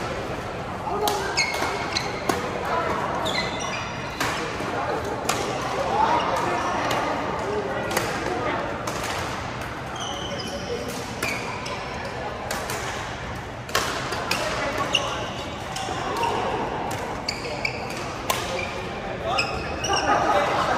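Badminton rackets striking shuttlecocks in repeated sharp pops, from this court and neighbouring ones, with court shoes squeaking on the floor and a murmur of voices, echoing in a large sports hall.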